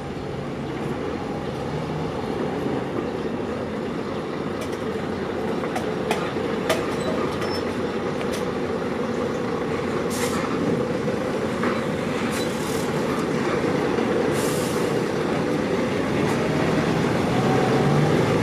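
A steady low mechanical drone that grows slowly louder, with a few sharp clinks as an aluminium stepladder is lifted up out of a manhole, and two short hisses later on.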